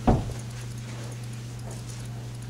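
A single heavy thump just after the start, dying away within a quarter of a second, over a steady low hum.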